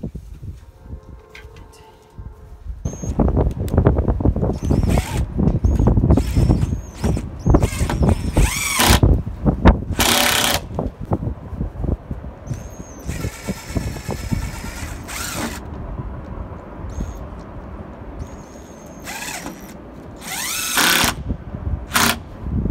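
A cordless impact driver driving screws into wooden boards on a post, in repeated bursts, its motor whining as it spins up.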